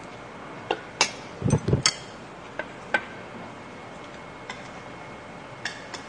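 Metal spoon and chopsticks clicking against bowls and side-dish plates in a scattered run of sharp clinks, busiest between one and two seconds in, with a dull thump about a second and a half in.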